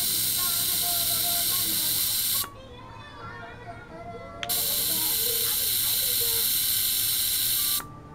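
Handheld ultrasonic device pressed against a water-filled container, running with a loud, even hiss. It runs twice for about three seconds each time, switching on and off abruptly, with a pause of about two seconds between.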